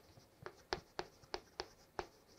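Chalk writing on a chalkboard: faint, short taps and scrapes of the chalk stick, about six strokes, as a line of handwriting goes up.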